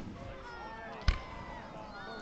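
A firework going off with a single sharp bang about a second in, over a low background of distant voices.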